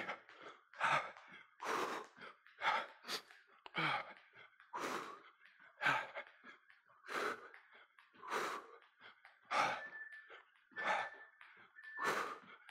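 Heavy, rhythmic breathing of a man jumping rope at full effort: short, loud exhalations about once a second, close to the microphone.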